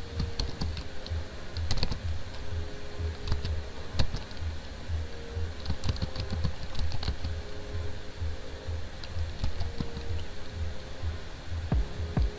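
Computer keyboard being typed on: scattered keystrokes in short, irregular runs, over a low hum.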